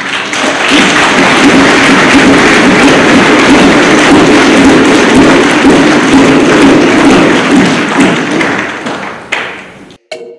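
Large audience applauding, the clapping dying away near the end.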